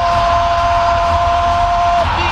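A held two-note electronic tone from the ceremony show's soundtrack, steady at one pitch over a noisy crowd-and-music bed with a deep rumble underneath.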